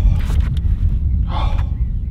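Steady low wind rumble on the microphone, with a single short breathy rush about one and a half seconds in.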